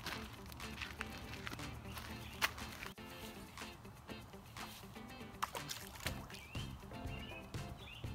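Background music with steady held notes and occasional sharp clicks.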